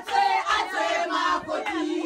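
A group of women singing and calling out together, several voices overlapping.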